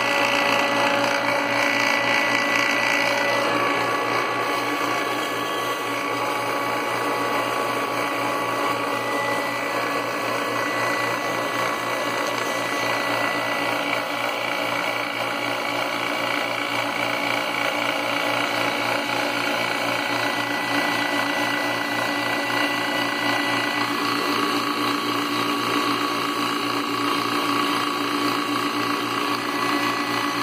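Matco ACRM134 refrigerant recovery machine (Robinair-built, 1997) running steadily with a mechanical hum and whine during its oil drain, as oil is let through the opened valve into the drain bottle.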